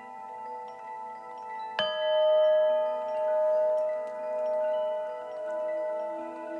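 A chime struck once about two seconds in, its tone ringing on with a slow, even pulsing swell, over a bed of softer sustained chiming tones.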